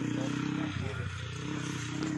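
Yamaha WR dirt bike's single-cylinder engine idling steadily.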